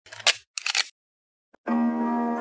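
Two quick camera-shutter clicks, then a pause; about one and a half seconds in, music starts with a held plucked-string note.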